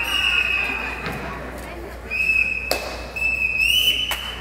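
A whistle blown in several long, steady, high notes, the last one gliding up near the end, with a few sharp knocks in between.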